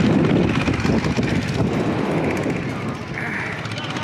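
Rushing, buffeting wind on the camera microphone as a chain-swing ride spins at speed, easing slightly near the end.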